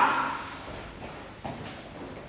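The echo of a shouted word fading out in a large, hard-walled room, then quiet room noise with two faint knocks about one and one and a half seconds in.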